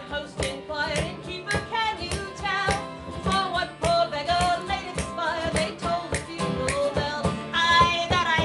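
Live acoustic folk ballad: a stringed instrument strummed in a steady rhythm under a sung melody.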